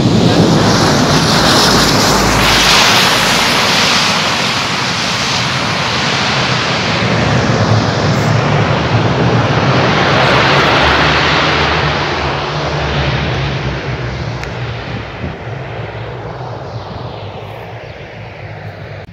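Aircraft landing on the airstrip: a loud, steady engine roar that holds for about eleven seconds, then fades away.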